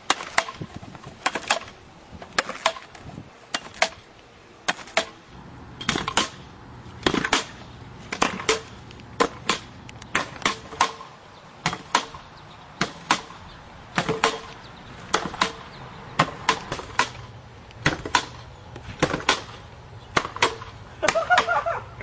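Pogo stick bouncing: a steady run of sharp knocks as it lands, one or two a second, often in close pairs.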